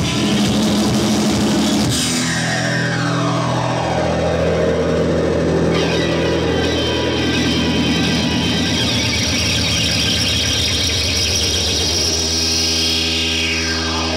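Live rock band's noisy outro: sustained electric guitar and synthesizer drones with long falling pitch sweeps, one about two seconds in and another near the end. The drum hits die out early, leaving the held drones.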